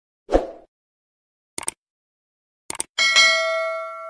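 Sound effects of an animated subscribe button: a short thump, then two quick sets of sharp clicks, then a bright notification-bell ding that rings on and slowly fades.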